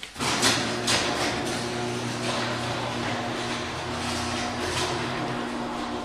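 A steady machine hum with a rushing hiss that starts suddenly just after the start, with a few knocks and rustles over it.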